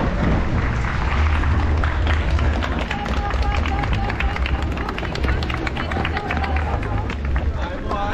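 Running footsteps of a pack of race runners on pavement, heard from a camera carried by one of them, with a heavy low rumble of wind and handling on the microphone. Voices of runners and spectators chatter underneath.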